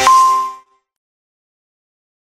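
A single bright chime, the closing note of a music jingle, struck right at the start and ringing with several tones for about half a second before it fades away.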